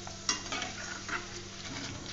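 Corn flakes deep-frying in hot oil in a steel kadai, sizzling steadily, while a perforated steel ladle stirs them. The ladle scrapes against the pan sharply about a quarter second in, then more lightly a few times.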